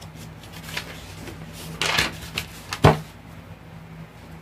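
A few light knocks and handling clatter, the sharpest knock just before three seconds in, over a low steady hum.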